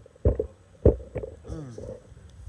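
Close breath puffs and low thumps into a handheld microphone held at the mouth: three strong ones in the first second and a half, then a brief falling vocal sound.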